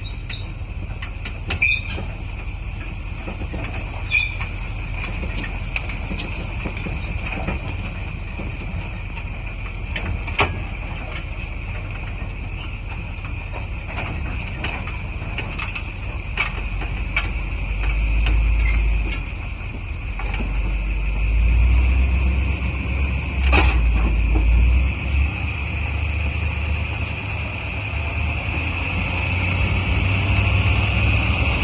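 Pickup truck towing a gooseneck trailer on a kingpin adapter while driving: steady engine and road rumble with a few sharp clicks and knocks from the truck and trailer. The rumble grows louder for a while about two-thirds of the way through.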